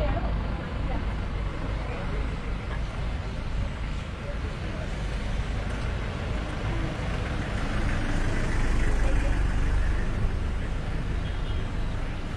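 Outdoor ambience of a group walking: indistinct voices over a steady low rumble.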